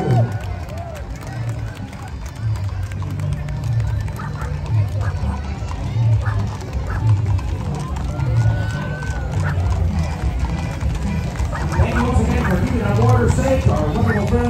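Parade street sound: music with a low pulsing beat about once a second, crowd voices, and scattered clops of horses' hooves on the pavement as the mounted riders walk past.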